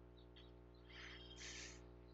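Near silence: faint room tone with a steady low hum and a brief, very faint rustle about a second in.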